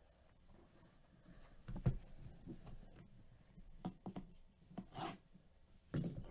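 A shrink-wrapped cardboard box handled by gloved hands on a mat: a low thump a little under two seconds in, then several light knocks and rubbing as it is picked up and tilted.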